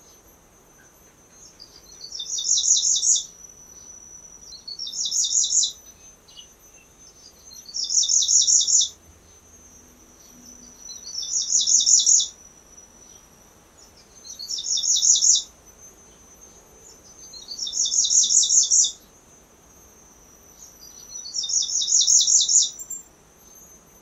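Grey-breasted prinia (Prinia hodgsonii) singing: about seven phrases, one every three seconds or so. Each phrase is a rapid, high-pitched series of notes lasting about a second and growing louder toward its end.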